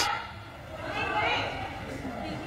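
Faint background voices, with a higher voice rising briefly around the middle. There is no mallet strike.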